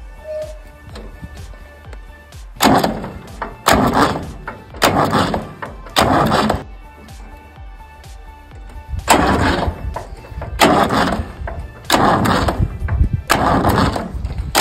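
Massey Ferguson 135 tractor engine being cranked in a string of short bursts about a second apart, with a pause in the middle, as it struggles to start after its fuel filter was changed.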